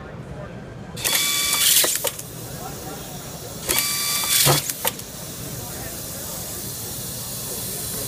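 Automatic-feed pistol-grip screwdriver driving two screws into a metal plate. Each cycle is a burst of about a second, with hiss and a whining tool motor, that ends in a few sharp clicks. A steady hiss follows from about five seconds in.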